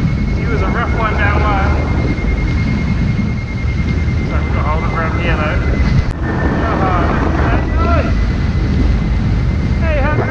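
Heavy wind rumble on the microphone of a hang glider in flight, with a steady high-pitched whistle held throughout. A voice breaks in several times, indistinct under the wind.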